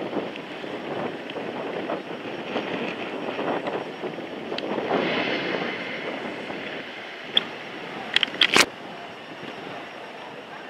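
Wind rushing over the microphone of a camera riding an open chairlift, a steady noise throughout. Near the end comes a quick run of sharp clicks.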